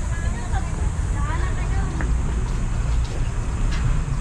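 Steady low outdoor rumble throughout, with faint voices of people nearby.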